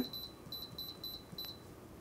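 Craft Express heat press's digital control panel beeping as its time setting is adjusted: a series of short, high beeps, about four a second.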